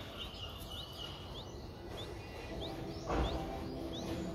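A small bird's short, high, rising chirps, repeated about every half second, with a dull thump about three seconds in.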